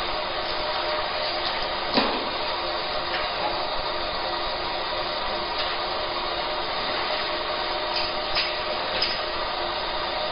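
Fiber laser marking machine running as it marks colour onto a stainless steel plate: a steady whir with a few faint held tones. A sharp click comes about two seconds in, and lighter ticks come near the end.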